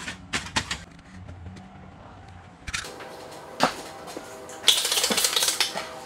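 Aluminium foil crinkling and crackling as it is pressed by hand around an engine wiring harness, in short crisp bursts. A louder rushing hiss lasts about a second near the end.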